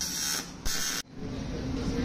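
Electric arc welding on an aluminium 6061 bicycle frame: the arc sounds in two short bursts, each under half a second long, and stops about a second in.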